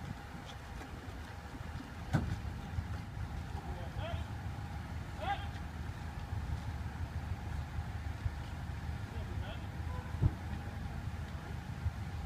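Street ambience: a steady low rumble of traffic and idling cars with a faint hum, faint distant voices, and two short sharp knocks about eight seconds apart.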